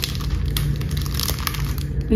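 Rustling and crinkling of things being handled close to the microphone, made up of many small crackles over a steady low rumble.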